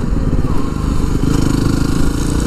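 Yamaha WR250R's single-cylinder four-stroke engine running on the move, its pitch climbing steadily from about a second in as the bike accelerates.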